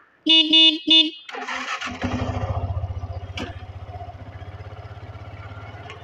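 Motorcycle horn beeping twice briefly, then the motorcycle engine starting about a second and a half in and running with a steady low pulsing beat.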